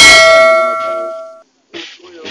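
A bell-like 'ding' sound effect from a subscribe-button animation: one bright metallic strike that rings in several clear tones, fades, and cuts off suddenly about a second and a half in.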